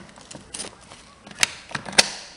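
A door latch being worked by hand: a few irregular sharp clicks and knocks of metal hardware.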